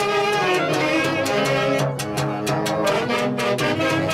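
Live Andean orquesta típica playing a lively tune, with saxophones, clarinet, violin and harp over a steady snare-drum beat.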